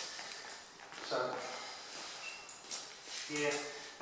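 A man's voice saying a couple of words, with quiet room tone between them and one faint knock shortly before the second word.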